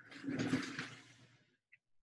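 A person dropping into an office chair: a rustling, rushing swish of body, clothing and cushion that swells and fades over about a second, followed by a faint click.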